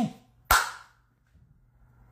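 A single sharp hand clap about half a second in, with a short echo dying away after it.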